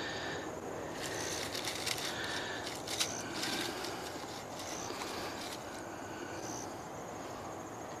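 Quiet outdoor background with short, faint high chirps recurring every second or two, and light rustling and small clicks from dry leaves and the cache being handled at the foot of a tree.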